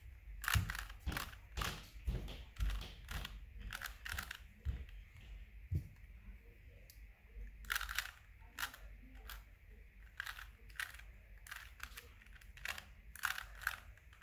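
Plastic layers of a 3x3 Rubik's Cube being turned by hand in quick runs of moves, clicking and clacking in irregular clusters with short pauses between them.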